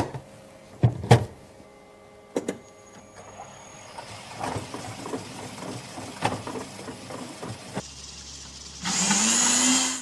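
A few clicks and knocks at the vat lid, then the soup machine running steadily, and near the end about a second of its mixing blade whirring loudly, its pitch rising as it speeds up and then holding, as it blends the cooked soup.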